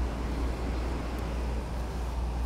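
Steady outdoor background noise with a constant low rumble and an even hiss, with no distinct events.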